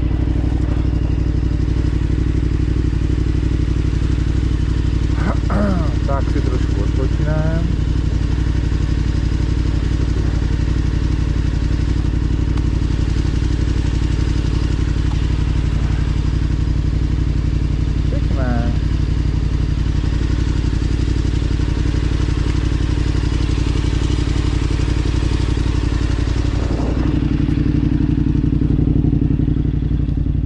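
KTM adventure motorcycle engine idling steadily while the bike stands still, growing a little louder for a couple of seconds near the end.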